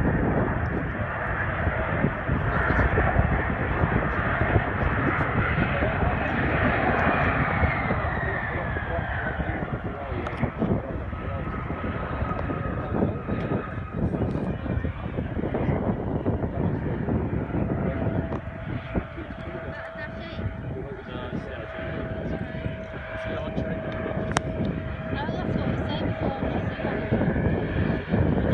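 Bombardier CRJ700's rear-mounted turbofan engines during the landing rollout. Their high whine falls in pitch about eight seconds in as they spool down, and a steady lower tone holds through the second half.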